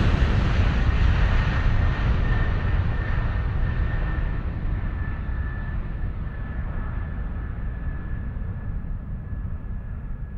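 A rumbling, rushing sound effect that slowly fades and grows duller, with a faint steady high whistle running through it.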